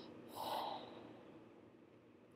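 A single short, faint breath out through the nose, about half a second in.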